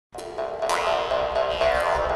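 Jaw harp (vargan) twanging over a steady drone, its bright overtones gliding up and down. It begins abruptly.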